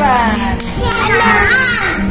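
A young child's high-pitched excited squeals, one falling at the start and another rising and falling later on, over background music.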